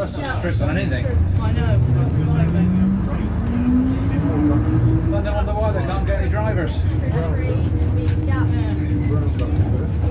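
Leyland Panther bus heard from inside the saloon, its engine rumbling steadily under way with a whine that rises in pitch over about four seconds as it picks up speed, then holds level. Voices talking in the background.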